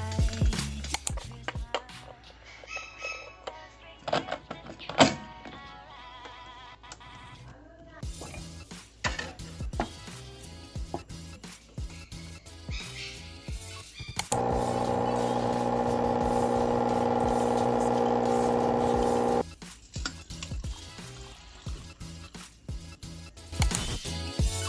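Background music over a home espresso machine. Clicks and knocks come from the portafilter being handled. Past the middle, the machine's pump starts buzzing loudly and steadily for about five seconds while espresso runs into the cup, then cuts off sharply.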